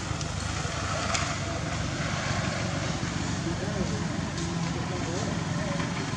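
Steady low rumble of outdoor background noise, with faint wavering voices over it now and then.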